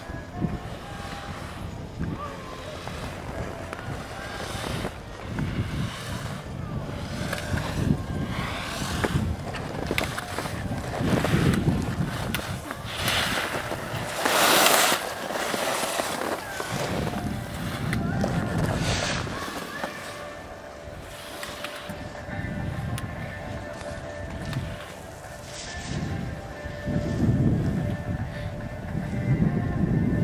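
Wind buffeting the microphone, with a slalom skier's ski edges scraping across firm snow, loudest in a hiss lasting about a second as the skier passes close by midway through. Faint music plays in the background.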